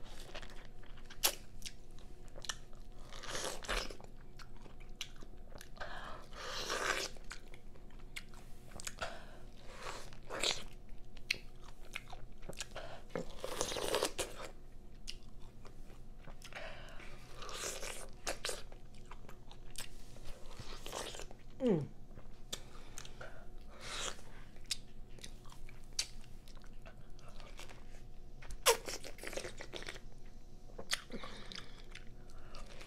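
Biting into and chewing a whole peeled pineapple with no hands, close to the microphone: crunching bites and chewing of the fibrous flesh, coming at irregular intervals.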